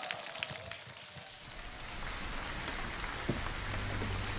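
Audience applauding, many hands clapping at once. A low hum comes in near the end.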